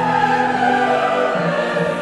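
Choir and orchestra performing a classical oratorio, holding sustained chords that move to a new chord about one and a half seconds in.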